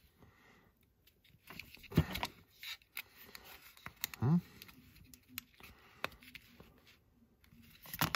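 Plastic pry tool prying at the snap-fit seam of a plastic flashlight housing: scattered scraping and sharp plastic clicks as the clips strain, the loudest snap about two seconds in.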